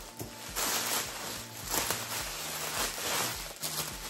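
Clear cellophane gift wrap crinkling and rustling irregularly as it is handled and its ribbon is pulled loose.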